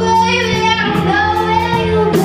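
Young rock band playing live: a girl's lead vocal sings held, gliding notes over electric guitars and a steady low bass line.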